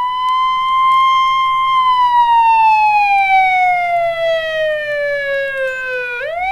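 A siren wailing. It holds high for the first two seconds, falls slowly in pitch, and starts to rise again at the very end.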